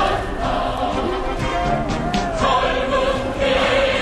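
Music with many voices singing together in long held notes, over the steady noise of a large outdoor crowd.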